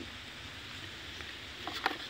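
Low, steady background noise with no clear source, and a couple of faint short sounds near the end.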